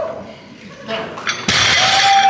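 Spectators cheering and clapping for a completed record deadlift, breaking out suddenly about one and a half seconds in after a quieter moment, with a long held shout over the clapping.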